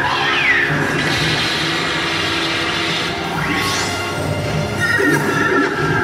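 Action soundtrack played over the stage PA for a live costumed hero show: music with a steady low beat and synthesized sci-fi sound effects, a falling tone at the start and a rising sweep about three and a half seconds in.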